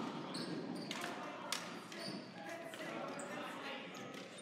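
Floor hockey on a gym's hardwood floor: plastic sticks clacking against the ball and the floor in scattered sharp knocks, with short high squeaks from sneakers, over kids' voices in a large, echoing gym.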